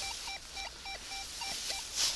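Rutus Alter 71 metal detector sounding a target signal: a run of short, mid-pitched beeps, about three a second, each dipping slightly in pitch at its end, as the coil is swept back and forth over a buried metal target.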